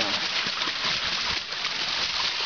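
Steady rush and splash of creek water pouring from a wooden flume onto a turning water wheel, with a few faint knocks.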